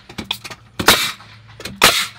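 Framing nailer shooting nails into a pressure-treated deck ledger board, two sharp shots about a second apart, tacking the ledger temporarily to the house.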